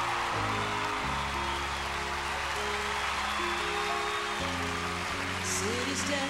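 Band playing the slow instrumental introduction to a country Christmas song: sustained chords over bass notes that change every second or few, with a brief high shimmer near the end.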